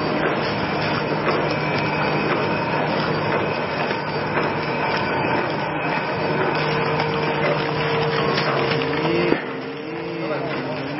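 Horizontal flow-wrap packaging machine running steadily as it wraps buns in plastic film, a constant mechanical hum with a few steady tones. The level drops suddenly near the end.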